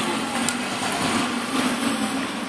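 Steady street noise with a low engine hum from a motor vehicle running nearby.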